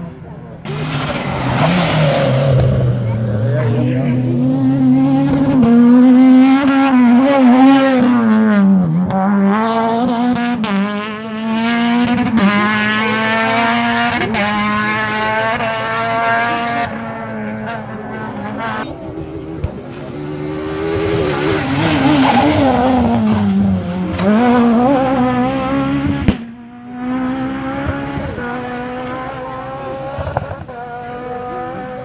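Rally car engine at full throttle on a closed stage, revving high and changing gear, its pitch climbing and dropping back again and again. Near the end the sound breaks off suddenly and a lower, steadier engine note follows.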